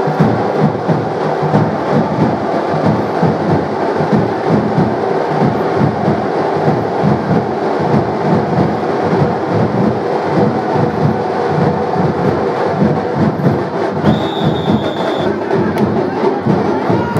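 Loud drum-led procession music with a fast, steady beat. A brief high steady tone sounds near the end.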